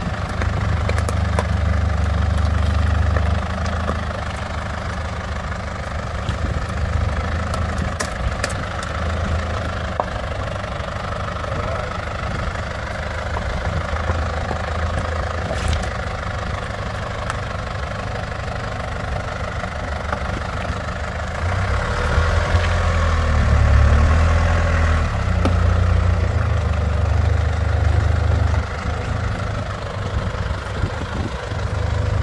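A 4x4's engine running at low revs as it crawls down a rocky, rutted lane. The engine note rises briefly at the start and again for several seconds after about two-thirds of the way through.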